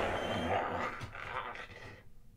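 A man's low growl, fading away over about two seconds.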